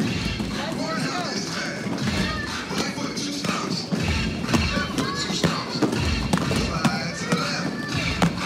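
Busy roller-rink din: many children's voices chattering and calling over background music, with clacks and thuds of quad roller skates and a plastic skate-trainer frame on the wooden floor.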